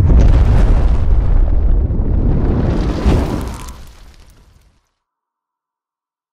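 Logo-intro sound effect: a loud noisy blast with a deep rumble that swells, then fades away over about four seconds, ending in silence.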